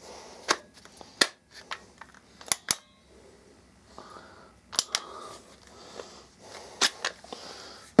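Irregular sharp plastic clicks and light knocks, about nine in all, as the Drillmaster 18-volt cordless flashlight is handled and switched on.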